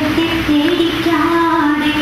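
A high voice singing slow, long held notes that step from one pitch to the next.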